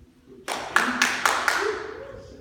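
Five sharp, echoing hits in quick succession, about four a second, starting about half a second in.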